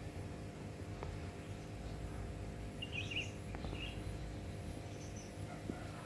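Quiet background: a steady low hum with a few short bird chirps around the middle.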